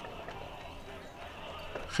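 Low background ambience in a pause between spoken lines, with a few faint scattered knocks.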